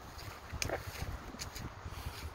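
Wind buffeting the phone's microphone in a low, uneven rumble, with two brief rustles about half a second and a second and a half in.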